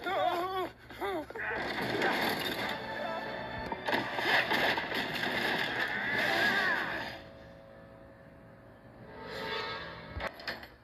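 Cartoon soundtrack played from a TV speaker: a character's wavering cry in the first second, then a stretch of loud, busy music that drops away about seven seconds in.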